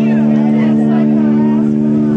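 A live band's amplified chord held steady as one unbroken drone, with people's voices talking and calling over it.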